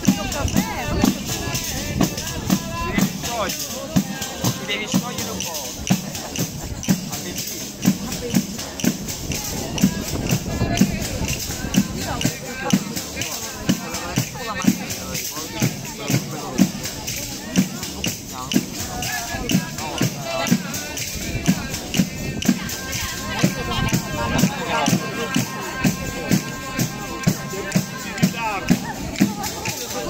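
Live tammurriata: a tammorra, the large southern Italian frame drum with jingles, beaten in a steady driving rhythm, with a voice singing over it.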